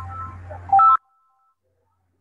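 An electronic ringtone-like melody of alternating beeping tones over a low hum, which cuts off abruptly about a second in and gives way to dead silence.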